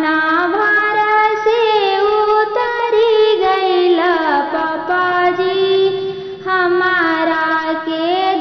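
A woman singing a Bhojpuri kanyadan wedding song (vivah geet) in long, drawn-out notes that slide between pitches. The phrase breaks briefly about six seconds in before a new one begins.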